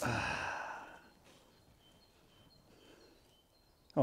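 A man's long, breathy sigh of about a second as he sits back in a chair, then quiet.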